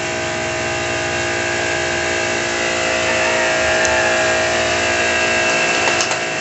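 Motorized sprayer pump running steadily, with the hiss of a fine water spray from a hose nozzle onto the pigs during their bath.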